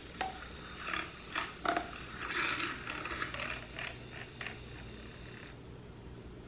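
Handling a container of super greens powder: a few sharp clicks, then a longer scraping rustle about two seconds in, and a couple more light clicks.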